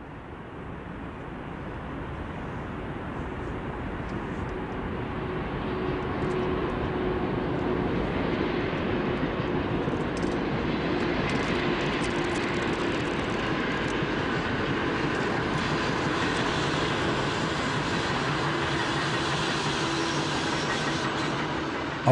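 Freight train hauled by a DB class E94 electric locomotive rolling past: the rolling noise of wheels on rails grows louder over the first several seconds as the train approaches, then holds steady as the line of hopper wagons passes. A faint steady tone runs through the rolling noise.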